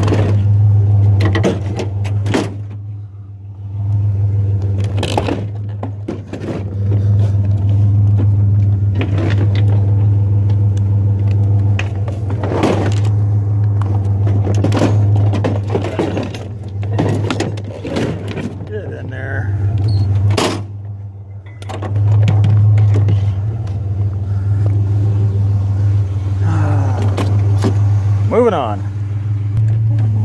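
A Chevrolet truck's engine idling steadily, with repeated clanks and knocks as a dishwasher is handled and loaded into the truck.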